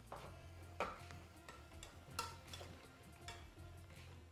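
A metal fork stirring food in an aluminium pressure cooker, clinking and scraping against the pot a handful of times, over faint background music.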